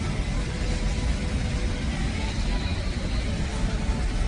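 Steady low rumble of an airliner cabin in flight, heard from a passenger seat.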